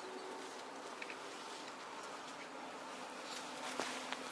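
Stationary Roslagsbanan electric commuter train standing at the platform with its doors open: a steady electrical buzz from its onboard equipment. The buzz drops to a lower tone near the end, with a few faint clicks.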